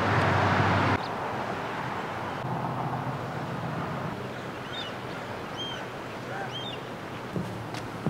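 Steady outdoor coastal ambience of wind and distant surf, louder for about the first second and then dropping at a cut. A few short high bird chirps come in the middle.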